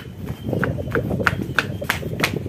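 Running footsteps, about three strides a second, picked up by the phone's microphone as a person runs while holding it, with rough handling noise underneath.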